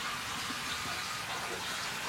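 Steady rushing of water in a large aquarium, as from its filter return.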